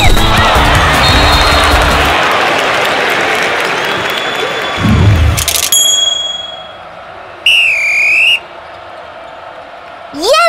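Cartoon crowd cheering and applauding for a slam dunk. Background music stops about two seconds in, a thud comes near five seconds, and the cheering fades out. Near the end, a short electronic tone dips and rises as the score is shown.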